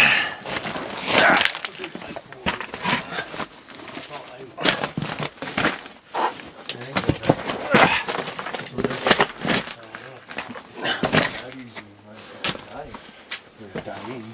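People scrambling over loose rock: repeated crunching footsteps, scrapes and knocks, with clothing rustling.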